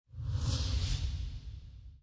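Euronews logo ident sound effect: a whoosh over a deep low rumble. It swells up quickly from silence and fades away gradually.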